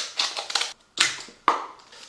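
Scissors cutting open a paperboard food carton: a series of sharp snips and crunches, each dying away quickly.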